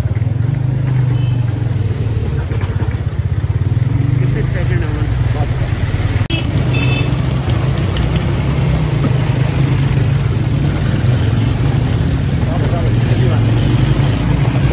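The engine of the vehicle carrying the camera running steadily at low speed, with passing street traffic and people's voices around it. A few short high-pitched tones sound about six to seven seconds in.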